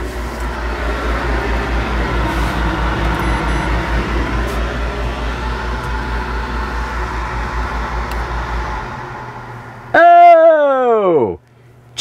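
Microwave oven and air conditioner running in a small RV: a steady electrical hum with a fast low pulse, which dies away about nine seconds in. About ten seconds in, a loud tone slides steeply down in pitch over about a second and a half.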